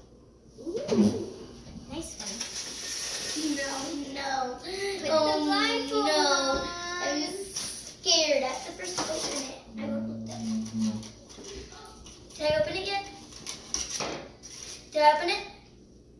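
Children's high-pitched voices talking and calling out, with a rustle of paper about two seconds in.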